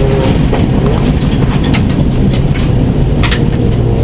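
Cabin sound of a Subaru STI rally car's turbocharged flat-four engine and the heavy roar of tyres and gravel under the car as it slows from about 80 to 60 mph on a loose gravel road. A few sharp clicks of stones striking the body come through, the clearest a little after three seconds in.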